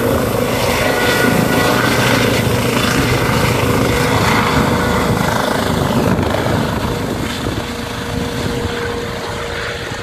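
Light helicopter with a ducted-fan (Fenestron) tail lifting off and climbing away, its rotor and turbine sound loud and steady at first, then fading gradually through the second half as it moves off.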